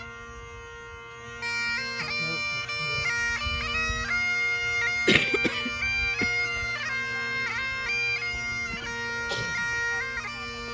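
Bagpipes playing: the drones are already sounding steadily, and the chanter melody comes in about a second and a half in. A single sharp knock cuts across the pipes about five seconds in.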